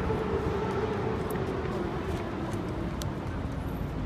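Street traffic: a passing vehicle's engine with a steady low rumble, its tone slowly falling in pitch, and a few faint clicks.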